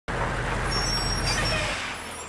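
Heavy armoured truck's engine rumbling as it pulls up, with a high thin brake squeal and a hiss of air brakes a little over a second in as it stops; the engine rumble cuts off near the end.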